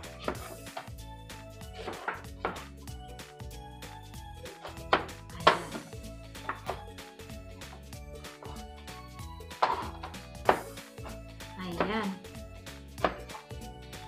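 A kitchen knife cutting through a lemon on a cutting board, the blade knocking sharply against the board a handful of times, over steady background music.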